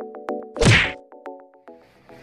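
Background music with a ticking beat and held notes, cut a little over half a second in by one loud swoosh-and-thud transition sound effect. The music then stops.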